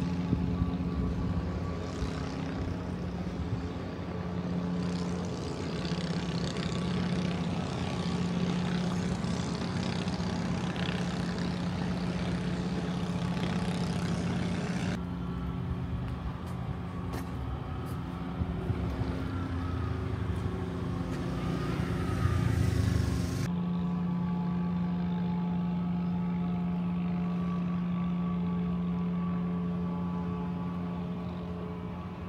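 Steady engine hum of idling motor vehicles under outdoor noise. The sound changes abruptly about halfway through and again some eight seconds later.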